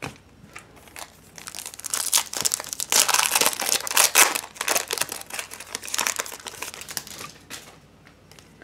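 Foil wrapper of a trading-card pack torn open and crinkled by hand. A dense crackling runs from about two seconds in to near the end.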